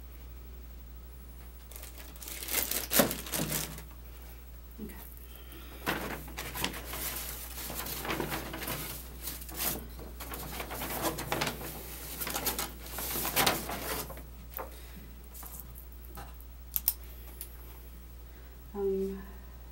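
Paperwork and evidence-kit packaging being handled: irregular rustling and crinkling in bursts, with two sharp clicks near the end.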